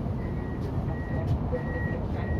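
Siemens ULF A1 tram's door warning beeper sounding short, even, high beeps about twice a second, typical of doors about to close at a stop. A low rumble runs underneath.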